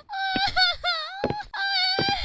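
A cartoon voice wailing and sobbing: long, high, wavering cries broken by short gasping breaths.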